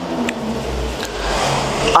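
A road vehicle passing, heard as a low rumble and hiss that swells toward the end.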